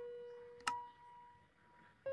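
Faint background music: sparse single pitched notes, one ringing on from just before and a new, higher note struck about two-thirds of a second in, each fading away.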